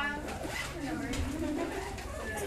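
Students talking among themselves in a classroom: indistinct overlapping voices, no words clear.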